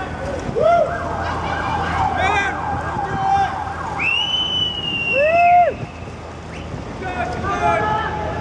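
Riders in a passing mass bike ride whooping and yelling, several rising and falling calls over street noise. The loudest is a high whoop about four seconds in that slowly falls away.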